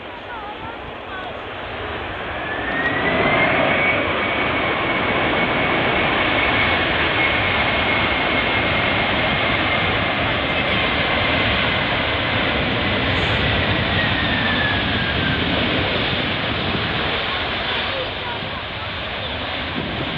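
Boeing 767's twin jet engines at high power on the runway. The noise swells over the first few seconds as a high whine climbs in pitch, then holds steady until the whine drops away around fifteen seconds in.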